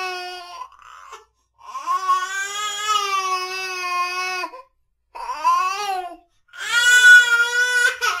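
A baby crying in a series of wails, each broken off by a short pause for breath; the longest wail lasts about three seconds and the loudest comes near the end.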